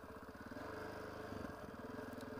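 Dual-sport motorcycle engine running steadily at low, even revs, fairly quiet, with a brief change in pitch just past halfway.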